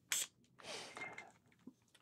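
Handling noise as a gadget is fitted onto the neck of a wine bottle: a sharp click, then a brief scraping rustle.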